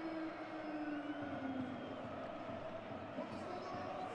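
Football stadium crowd noise, a steady din of many voices, with a held tone fading out in the first second or so.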